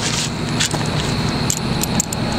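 Steady vehicle rumble with scattered light metallic clicks and jingles from a broken bicycle rear wheel, its spokes snapped and hub blown out, as it is handled.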